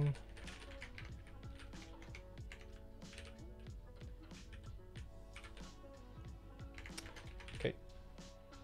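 Typing on a computer keyboard: irregular key clicks throughout, over quiet background music. A short voiced sound comes near the end.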